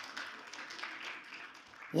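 A congregation clapping and applauding, faint and heard from a distance, slowly dying down.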